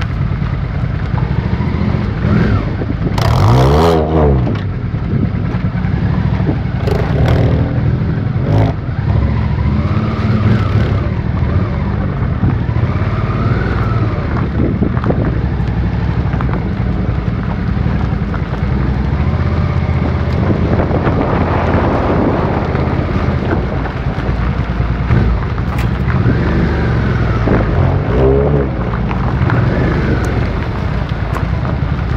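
Mini Cooper S's four-cylinder engine running as the car creeps along at low speed, heard close behind it. The engine note rises and falls briefly a few seconds in and again near the end.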